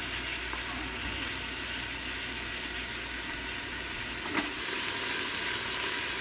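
Sliced smoked sausage with onions, garlic and roasted red peppers sizzling steadily in an Instant Pot's inner pot on sauté mode. A single light click sounds about four seconds in.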